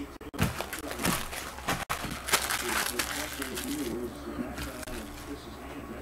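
Trading cards being handled and set down, with short clicks and rustles of card stock in the first few seconds. Low, indistinct speech runs underneath.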